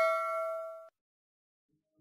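The tail of a bell 'ding' sound effect from an animated subscribe-button and notification-bell graphic, a ringing tone with several overtones that decays and fades out about a second in.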